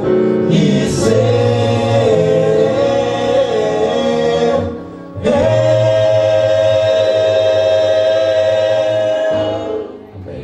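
Five-voice male a cappella group singing in close harmony through microphones. After a short break about halfway, they hold one long closing chord that fades out near the end.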